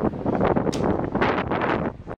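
Wind blowing across the microphone, a loud uneven noise that rises and falls in gusts.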